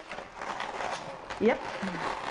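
Latex twisting balloons rubbing against each other as a long balloon is wrapped around a balloon figure.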